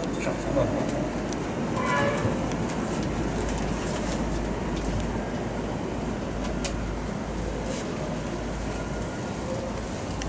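Steady low rumbling background noise with no talk, and a short pitched sound about two seconds in.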